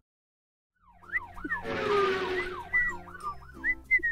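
A police-style siren wail, its pitch swinging up and down about twice a second, starts about a second in, with a brief whoosh near the middle and low sustained notes under it.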